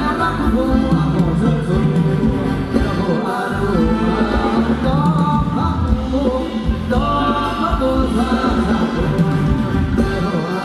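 Thai ramwong dance song played by a live band, with a singer's melody over a steady beat.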